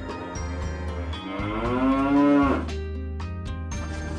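A single drawn-out moo, about a second and a half long, rising and then falling in pitch and loudest near its end, over light background music.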